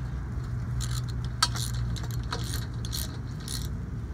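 Ratchet handle with an 8 mm hex bit tightening a set screw on a galvanized pipe fitting: irregular metallic clicks and clinks, about seven in all, over a steady low hum.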